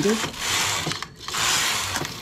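Domestic knitting machine carriage pushed across the needle bed and back, knitting two rows: two long clattering rushes of the needles, with a brief pause between them.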